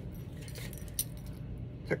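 Faint handling noise over a low steady hum, with one sharp click about halfway through. A man starts to speak at the very end.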